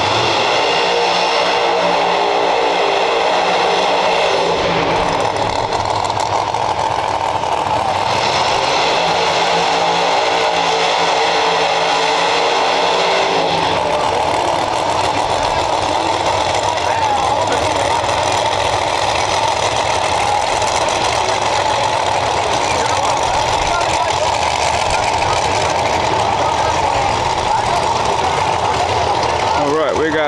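Drag race car engines idling loudly and steadily as the cars roll toward the starting line; the tone shifts a few times.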